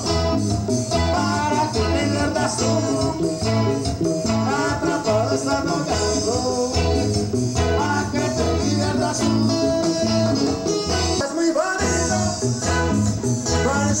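Live band playing Latin dance music over loudspeakers, with a steady bass beat under a lead melody in a passage with no singing. A singer comes back in right at the end.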